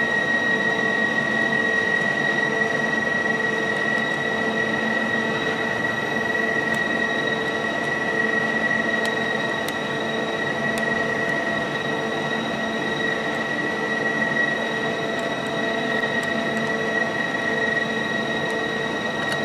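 Steady machine hum with a constant high whine from a powered-up CNC lathe standing idle with its spindle stopped. A few faint clicks of control-panel keys sound over it.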